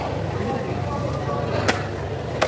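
A heavy knife chops once through a tuna head into a wooden chopping block about a second and a half in, a single sharp knock over background voices.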